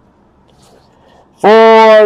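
Faint room noise, then about a second and a half in a man's voice starts loudly with one long, steady held vowel, the drawn-out start of an announcement.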